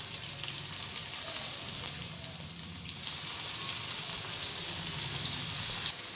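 Noodle pakora balls deep-frying in hot oil in a kadai: a steady sizzle of bubbling oil, with a light click about two seconds in.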